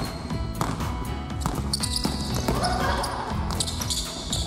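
A basketball dribbled on a hardwood gym floor during a one-on-one drive to the basket, over background music.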